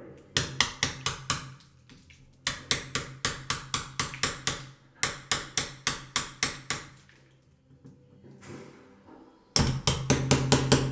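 Small hammer striking a hacking-out knife to chip old putty out of a wooden door rebate: three runs of quick, sharp taps, about four a second, with short pauses between, the last starting near the end. The putty is semi-hard, with some give left in it.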